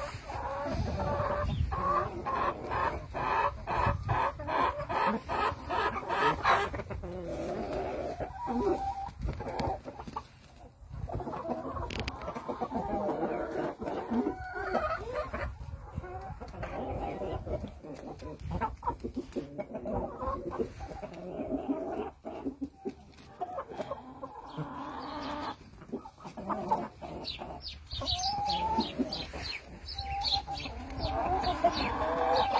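Flock of Cochin chickens clucking, with a fast run of repeated clucks over the first several seconds.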